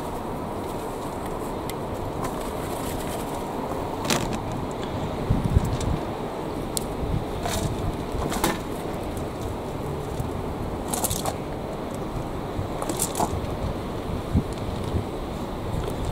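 Gloved hands rummaging through potting compost in a metal wheelbarrow, picking out potatoes, with scattered rustles and short clicks over a steady outdoor background.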